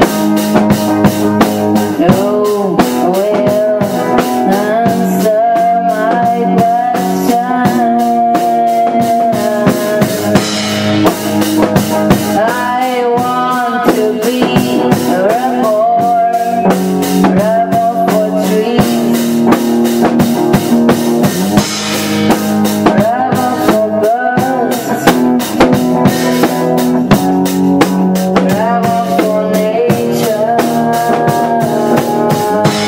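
A band playing live: a drum kit keeps a steady beat under guitar, and a woman sings into a handheld microphone with a wavering, drawn-out vocal line.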